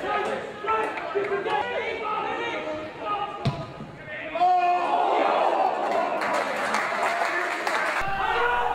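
Shouting voices of players and spectators carrying across a football pitch, with the sharp thud of the ball being struck once about three and a half seconds in; the voices grow louder and denser from about halfway.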